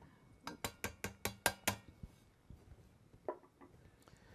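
Light taps of a soft hammer on a trumpet's brass valve casing: a quick run of about eight taps, then a softer knock near the end. The tapping is meant to loosen calcium deposits or rust that hold a stuck valve cap.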